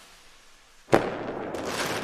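Logo-reveal sound effect from an intro animation: the fading tail of a whoosh, then a sharp explosive hit about a second in, followed by a loud noisy rush.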